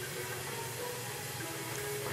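Quiet room background: a steady low hiss with no distinct sound.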